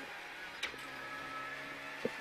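Renault Clio Rally5's turbocharged 1.3-litre four-cylinder engine running at a steady pitch, heard from inside the cabin, with a single click a little over half a second in.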